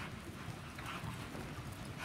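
Hoofbeats of a horse and a small herd of cattle moving over soft arena dirt: dull thuds and scuffs about a second apart.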